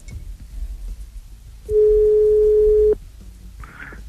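Telephone ringback tone on a phone line: one steady mid-pitched beep about a second and a quarter long, the signal that the called phone is ringing.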